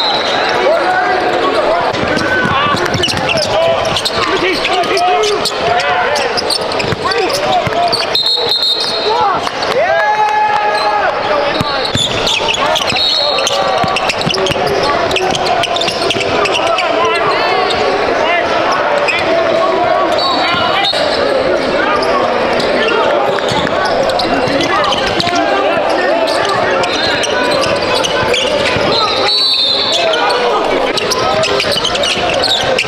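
Basketball game sound in a gym: a ball bouncing on the hardwood court amid a steady chatter of players' and spectators' voices. Several brief high-pitched squeaks come through now and then.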